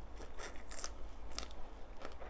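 Close-miked eating: a mouthful of crisp fresh lettuce being bitten and chewed, with about five sharp, short crunches, the loudest just under a second and a half in.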